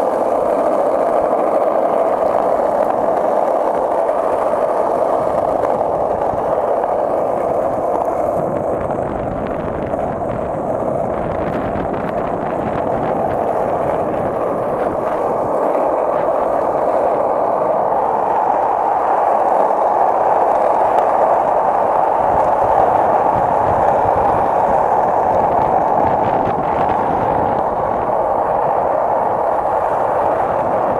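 Skateboard wheels rolling steadily over cracked asphalt, a continuous loud rolling noise that swells a little past the middle.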